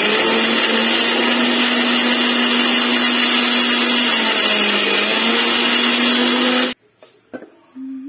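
Electric mixer grinder running, grinding bread into breadcrumbs: a loud, steady motor whirr whose pitch dips briefly midway, then switched off with an abrupt stop near the end.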